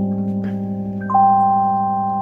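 Electronic stage keyboard playing a sustained chord in a song's introduction, with a couple of higher notes added about a second in.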